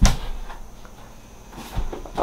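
A sharp knock right at the start and a dull low thump near the end, with only faint noise between.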